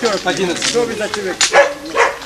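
Several men's voices talking over one another, indistinct.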